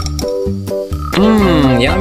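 Background music with a regular, bouncy keyboard pattern. About a second in, a louder comic croak-like sound effect with a wavering, sliding pitch comes in over the music.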